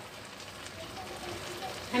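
Grated carrots and milk cooking down in a kadhai on the stove: a soft, steady crackling hiss of simmering as a spoon works through the mixture.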